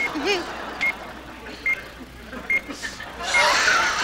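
Game show countdown clock beeping: short, high electronic beeps about once a second while the clock runs down. A voice is heard briefly at the start, and a louder spell of voices and studio noise comes near the end.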